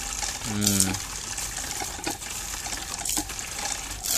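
Water pouring from a hand pump's spout into a bucket, a steady splashing stream.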